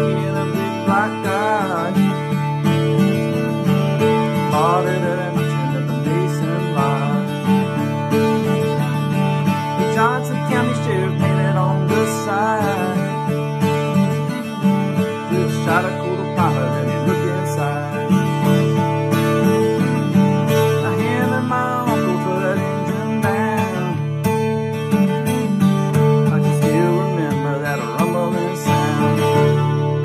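Acoustic guitar in DADGAD tuning, strummed and picked without a break. The low open strings drone steadily while higher melody notes move above them.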